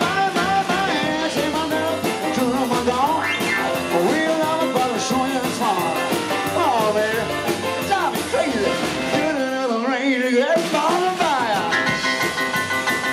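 A live band playing: drum kit keeping a steady beat under electric guitar, with melodic lines bending up and down.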